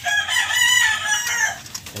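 A long animal call with a clear pitch. It starts at once, rises a little and falls away over about a second and a half.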